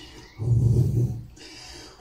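A man's short, low murmur close to a handheld microphone, followed by a soft breath.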